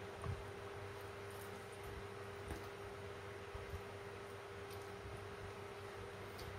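Faint room tone with a steady low hum and a few soft, short taps.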